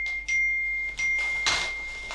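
Text-message notification chimes: a short, high, bell-like ping twice, about 0.7 s apart, as new chat messages arrive, each ringing on. A brief hissy burst follows about one and a half seconds in.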